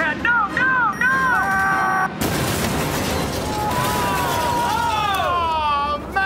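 A man shouts "no, no, no!", then about two seconds in a sudden explosion sound effect bursts in for a jet being shot down. It carries on as a dense rumble with slowly falling tones.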